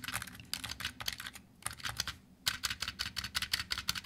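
Fast typing on a Razer Huntsman Mini keyboard with red linear optical Gen 2 switches: a dense run of key strokes, broken by a short pause a little before the middle.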